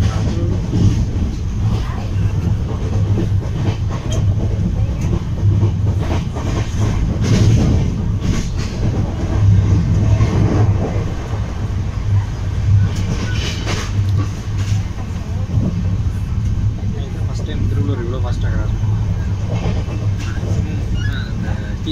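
Shatabdi Express passenger coach running at speed, heard from inside: a loud, steady low rumble of wheels on rail with scattered sharp clicks and knocks from rail joints and points.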